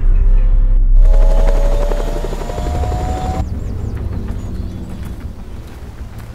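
Helicopter rotor chopping with a turbine whine that rises slightly in pitch, cutting off suddenly about three and a half seconds in. A deep rumble sits underneath and fades away toward the end.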